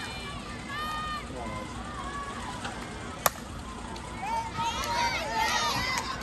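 A single sharp crack about halfway through, a softball bat striking the ball, followed by spectators' voices rising into shouts and cheers.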